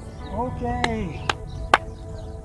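Three sharp clicks about half a second apart, the last one loudest, over background music and voices.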